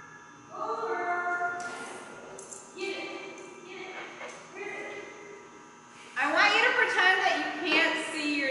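People's voices in a large hall: a few drawn-out, held calls, then louder talking from about six seconds in.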